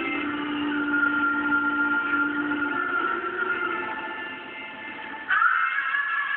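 A woman singing a solo into a microphone, holding long sustained notes, with a loud new phrase starting about five seconds in. The sound is thin and muffled, as from a cellphone recording.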